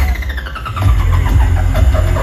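Live synth-pop music at a break in the song: a falling electronic pitch sweep over about the first second while the bass drops out, then the bass beat comes back in.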